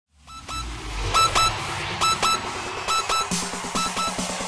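Electronic breakbeat dance track starting up: short, sharp synth blips over a low bass. A little over three seconds in, a fast, evenly repeating pulse over a steady low note begins the build.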